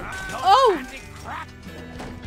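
A cartoon character screaming once, loud and brief, rising then falling in pitch about half a second in, over background music.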